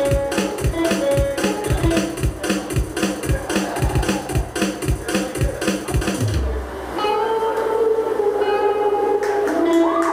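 Live rock band playing: electric guitars over a steady drum beat, about three to four hits a second. About six seconds in the drums stop and the guitars ring on in long held notes.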